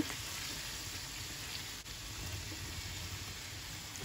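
White beans, tomato and vegetables sizzling steadily in olive oil in a frying pan, with one faint click a little under two seconds in.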